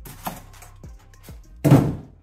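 Styrofoam packing lid being pulled off a boxed monitor: a few light taps, then a loud, short scraping thump of foam against foam about one and a half seconds in.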